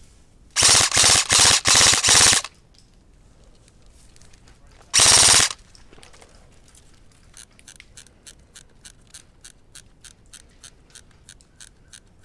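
Airsoft electric rifle (G&P MK18 replica) firing full-auto: four quick bursts in under two seconds, then one more short burst a few seconds later. A run of faint, evenly spaced ticks follows near the end.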